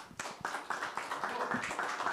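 A small group of people applauding, the clapping starting suddenly and running on as a dense patter.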